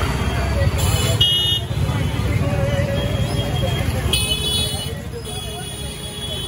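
Busy street traffic of scooters and motorbikes with a steady low engine rumble, mixed with crowd voices. Short high-pitched horn toots sound about a second in and again about four seconds in.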